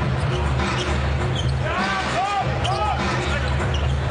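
Live basketball game sound on an arena court: the ball bouncing on the hardwood among players' voices and short pitched squeaks, over arena music with a steady low bass.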